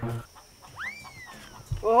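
A single high whistle-like call about a second in, rising sharply and then falling slowly, over a faint steady high-pitched hum. Background music cuts off at the very start, and a short low thump comes just before a man's voice near the end.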